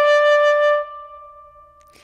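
Saxophone holding one long, steady note at the end of a slow phrase. The note dies away over the second half.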